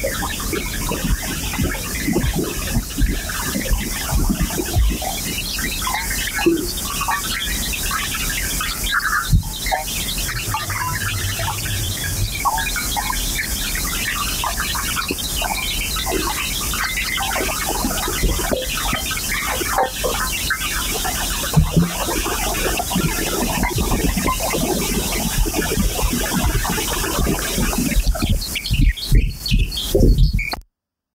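Experimental electroacoustic noise music: a dense, steady texture of short chirping, bird-like fragments over a constant hiss, becoming choppier near the end.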